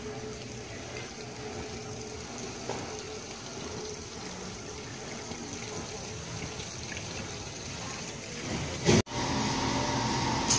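A courtyard fountain's water splashing steadily. Near the end the sound cuts off abruptly.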